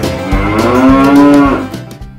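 A cow mooing: one long moo lasting about a second and a half, rising a little in pitch and then levelling off before it fades.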